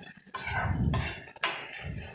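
A metal spoon scrapes and knocks against a metal kadai while stirring sliced onions. There are two sharper knocks, one about a third of a second in and one past the middle.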